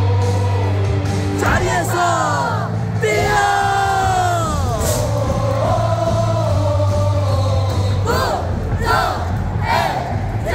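A baseball team's victory song plays over the stadium speakers with a steady bass line while a large crowd of fans sings and yells along. In the first half there are long falling whoops, and near the end the crowd shouts in time with the beat, roughly one shout a second.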